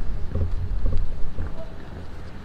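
Wind buffeting the camera microphone: an uneven low rumble that eases off near the end.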